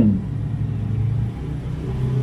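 A steady low rumble with a level low hum, like a nearby engine running, heard in a pause between speech.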